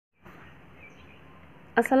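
Faint steady background hiss, then a voice begins speaking near the end.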